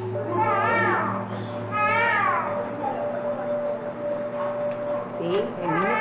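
A newborn baby crying in two short wails, each rising then falling, about half a second and two seconds in, over quiet background music.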